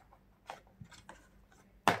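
Small plastic toy blocks clicking against each other and the plastic tub as they are picked out, a few light clicks and then one sharper click near the end.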